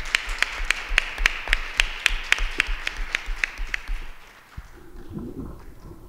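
Audience applauding, with sharp individual claps standing out at about three a second, dying away about four seconds in.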